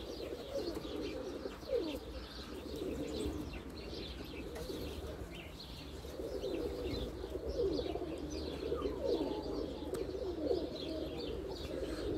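A flock of domestic pigeons cooing continuously, with higher-pitched chirping over the top.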